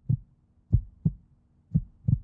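Recorded heartbeat sound effect: soft, low double thumps (lub-dub) repeating about once a second.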